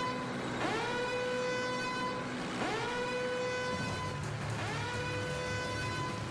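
Cartoon soundtrack: a pitched tone slides up and holds, repeating about every two seconds. A low rumble joins about four seconds in.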